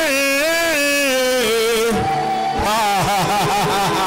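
A man singing wordless worship through a microphone, holding long gliding notes and breaking into a run of quick wavering notes midway, over a sustained held chord.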